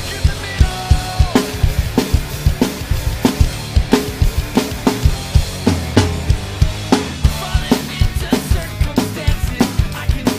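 Acoustic drum kit played to a steady rock beat, with kick and snare hits about twice a second and cymbals washing over them. The kit plays along with a recorded rock song whose bass and guitar lines sound under the drums.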